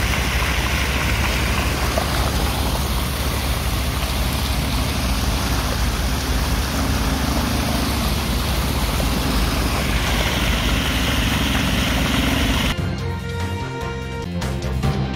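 Loud, steady rush of sewage water gushing out of a large pipe onto the road, over a deep rumble. News theme music takes over near the end.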